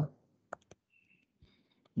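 A few faint, short clicks of a stylus tapping on a pen tablet while handwriting on screen, with a brief faint high tone about a second in; otherwise nearly quiet.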